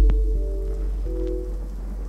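A quiet breakdown in a future garage / deep house track: the beat has dropped out, and a deep sub-bass slowly fades while a few soft synth chord notes sound over a faint hiss-like noise texture.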